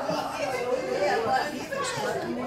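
Indistinct chatter: several people talking at once in a room.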